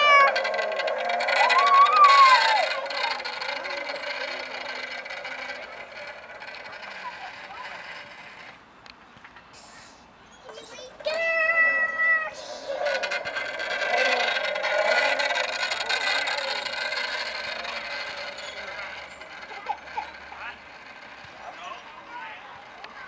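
A playground zip line's trolley running along its steel cable, a whirring hiss that swells, drops off around nine seconds in, and comes back. A child squeals as the ride starts, and a steady high squeal sounds for about a second around eleven seconds in.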